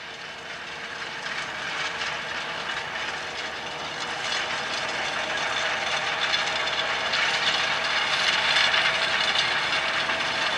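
Case IH Puma 210 tractor's six-cylinder diesel engine working under load, with the rattle of the Kuhn seed drill it is pulling. The sound grows steadily louder as the tractor approaches.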